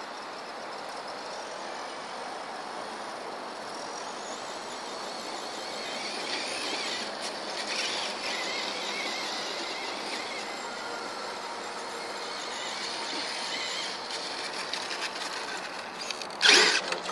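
Traxxas E-Maxx electric RC monster truck driving through grass: the high whine of its motor and geartrain rises and falls with the throttle, louder from about six seconds in.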